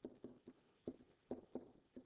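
Pen or stylus tapping on a writing surface while handwriting letters: a series of short, faint, irregular taps.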